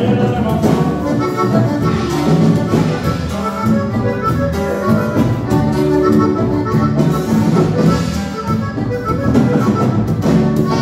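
A live band playing Mexican regional dance music with a steady beat.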